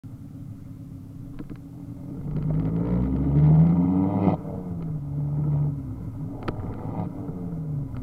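Ford Focus ST225's turbocharged five-cylinder engine, heard at the exhaust tailpipe, rising in revs under acceleration for about two seconds. The throttle is then lifted with a crackle, and a single sharp exhaust pop follows a couple of seconds later as the revs fall away.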